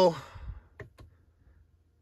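Two light clicks, about a quarter second apart, from the Jeep Grand Cherokee 4xe's cabin controls as the drive mode is switched from Auto to Sport, after a soft low thump; then near silence.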